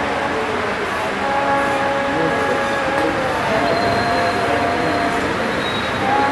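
Devotional singing: a voice holding long, drawn-out notes, the pitch stepping down a little about halfway through.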